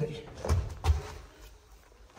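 Two dull thumps about a third of a second apart, as someone climbs up onto the wooden floor of an empty semi-trailer.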